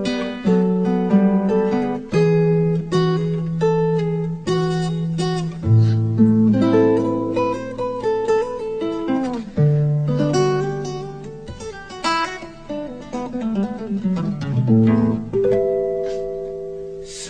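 Acoustic guitar playing an instrumental passage of picked single notes and chords that ring on, with low bass notes held beneath.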